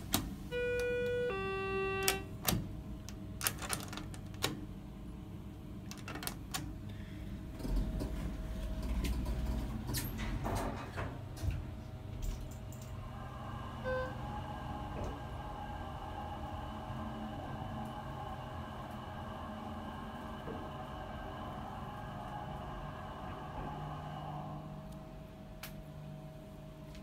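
Schindler 330A hydraulic elevator responding to a floor-1 call: two short electronic beeps, the second lower, then clicks and a low rumble as the car sets off. The car goes down with a steady whine, a short beep about 14 seconds in, and the whine stops shortly before the end as the car arrives.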